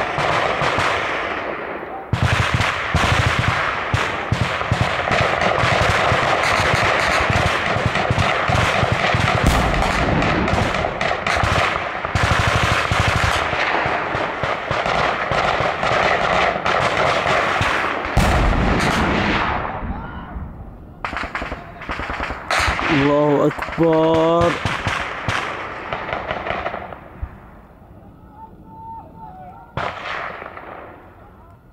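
Sustained automatic gunfire, several weapons firing in rapid, overlapping bursts. It thins to scattered shots after about twenty seconds, with a man's shout during the last bursts.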